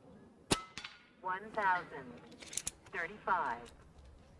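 A single shot from a silenced Evanix Rex Ibex .22 PCP air rifle: one sharp crack about half a second in. A brief, faint ring follows from the steel gong target struck downrange.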